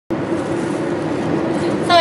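Steady road and engine noise heard from inside a moving car's cabin, with a constant low hum under it.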